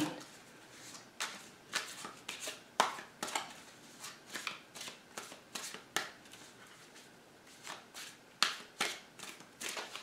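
A deck of tarot cards being shuffled by hand: short, irregular snaps and slides of the cards against each other, with a brief lull a little past the middle.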